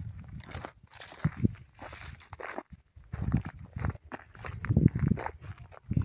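Footsteps crunching irregularly through dry grass and parched ground, with a low rumble of handling noise on the phone's microphone.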